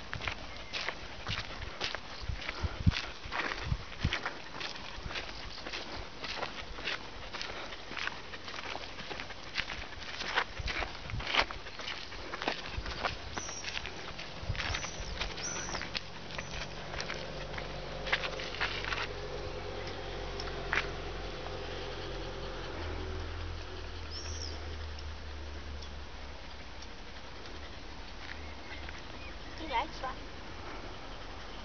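Footsteps on a dirt track: flip-flops slapping and the steps of a pack of leashed dogs, a run of quick irregular clicks and scuffs that thins out after about 19 seconds. A low steady hum comes in during the second half.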